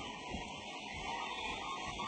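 Faint, steady background noise of a boxing arena broadcast, an even hiss-like din with no distinct punches, shouts or bell.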